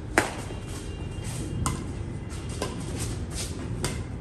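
Badminton rackets striking a shuttlecock in a rally: four sharp hits roughly a second apart, the first and loudest just after the start.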